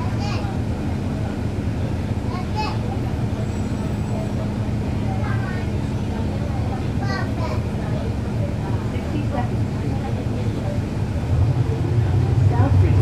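Cummins ISL9 diesel engine of a 2011 NABI 416.15 transit bus running at a steady pace, heard from on board as a low hum, with brief voices of people on the bus. Near the end the engine hum gets louder as it pulls harder.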